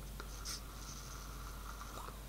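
A mouth-to-lung draw on a Dvarw RTA rebuildable tank on a vape mod. After a light click near the start, air drawn through the small airflow hole makes a faint, steady thin whistle with a soft hiss for nearly two seconds.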